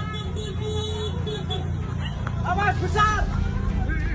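People's voices over a steady low rumble, the voices clearest about two and a half to three seconds in.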